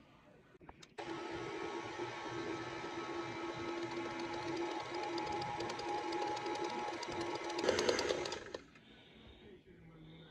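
Electric stand mixer running, its beater mixing flour into molasses cookie dough in a metal bowl. The motor starts about a second in, hums steadily, gets louder just before the end, then stops.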